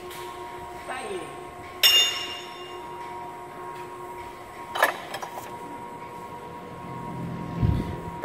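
Metal hand tool clinking against engine parts: one sharp ringing clink about two seconds in, a duller knock near five seconds, over a steady background hum.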